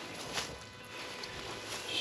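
Quiet outdoor background with faint footsteps on grass and a soft click about half a second in.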